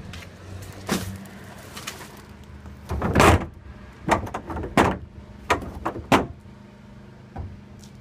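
Black plastic wheelie bin lid being opened and handled: a string of hollow plastic knocks and clatters, the loudest and longest about three seconds in. A steady low hum runs underneath.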